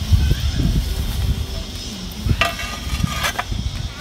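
Terracotta roof tiles being handled and fitted together in a ring, with scattered low knocks and a sharp clack about three seconds in.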